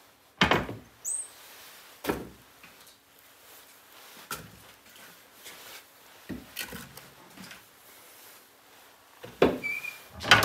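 Wood-fired Rayburn range being fed: its fire door is opened, split logs are knocked into the firebox, and the door is swung shut near the end. The result is a string of hard knocks and wooden thuds, the loudest about half a second in.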